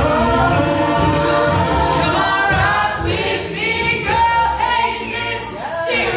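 Live a cappella group singing: a female soloist on microphone over men's and women's backing harmonies. About halfway through, the low backing voices thin out, leaving the solo line over lighter harmonies.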